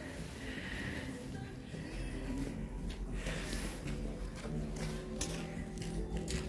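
Quiet background music with soft sustained tones.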